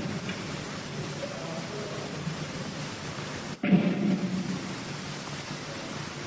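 Hissy live concert tape between songs: steady noise with a faint crowd murmur. About three and a half seconds in, the sound cuts out abruptly for a moment, then comes back louder.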